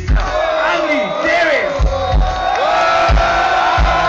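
Heavy metal band playing live through a loud PA, recorded from within the audience, with the crowd shouting and singing along over heavy drum beats.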